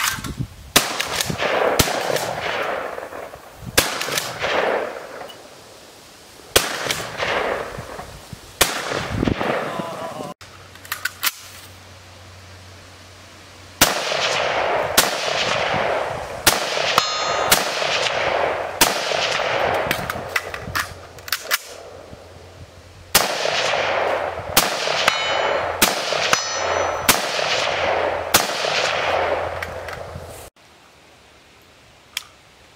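Shotgun shots at thrown clay targets, fired singly a second or more apart, each followed by a long echo. Then fast strings of shots from an AR-style semi-automatic rifle, about two a second.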